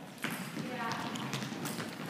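Irregular light taps and thuds of feet hopping and landing on a wooden gym floor, with a voice briefly heard about a second in.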